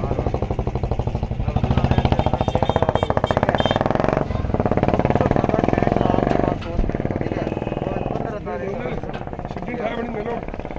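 An engine running with a rapid, even chugging that drops away about six and a half seconds in, with voices in the background.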